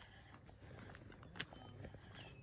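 Near silence: faint outdoor ambience with a single faint click about one and a half seconds in.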